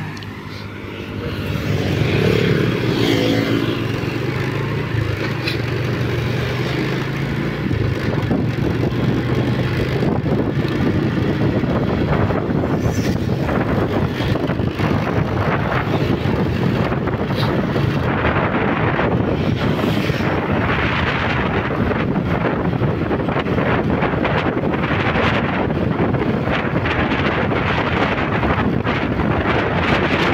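Riding a motorbike along an open road: the engine runs steadily under wind rushing over the microphone. The wind grows rough and fills the sound from about eight seconds in.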